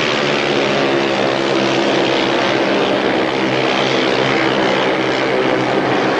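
Speedway motorcycles' 500cc single-cylinder methanol engines running flat out around the track, a steady loud drone with a stack of even engine tones.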